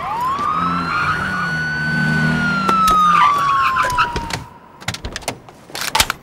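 Police car siren wailing in one long cycle: the pitch rises quickly, holds, then falls slowly away. A few sharp knocks follow near the end.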